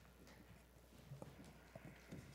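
Near silence: room tone with a faint steady low hum and a few soft taps or knocks in the second half.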